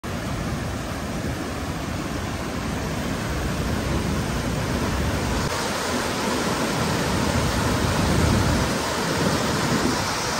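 Whitewater rapids of a fast mountain river rushing over boulders close by, a steady, unbroken noise of churning water.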